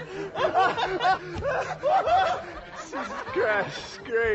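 A man laughing hard and long, a string of loud ha-ha bursts that rise and fall in pitch.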